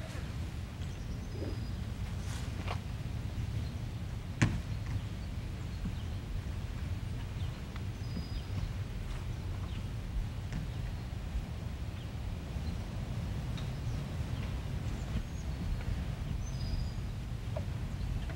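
Outdoor ambience with a steady low background rumble, a few faint bird chirps and one sharp click about four seconds in.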